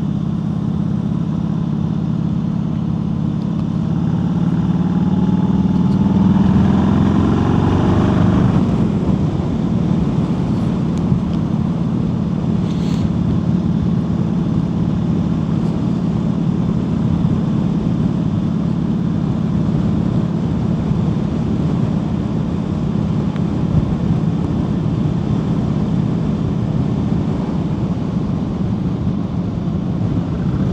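2001 Harley-Davidson Heritage Softail's V-twin engine under way. Its pitch rises for several seconds, drops back a little past eight seconds in, then holds steady at cruising speed under constant wind and road noise.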